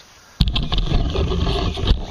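Camera microphone handling noise: a sudden loud rumbling rub with a few sharp knocks starts about half a second in, as the camera is picked up and moved.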